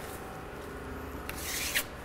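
Steel putty knife scraping across a wet concrete overlay coat on a tabletop, spreading the mix. The scraping starts softly and builds in the second half, peaking in one short, harsh stroke near the end.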